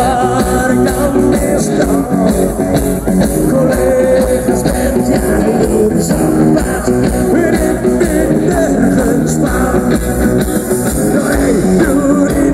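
A live rock 'n' roll band playing loudly: electric guitars, bass guitar and a drum kit keeping a steady beat, with a lead vocal sung over them.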